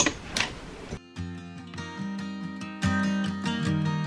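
Two short clicks and rustling as clothes are handled in a drawer. About a second in, background music with plucked acoustic guitar cuts in and carries on steadily.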